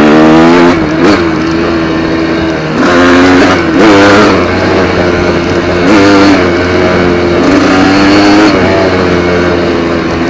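Kawasaki KDX200 two-stroke single-cylinder dirt bike engine being ridden, the throttle opened and closed so the engine note rises and falls every second or two.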